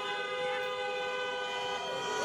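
Car horns honking in long, held blasts, two steady tones sounding together.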